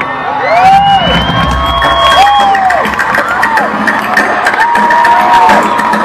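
Concert crowd cheering close around the microphone, with several voices whooping in rising-and-falling calls over the general noise and music from the stage underneath.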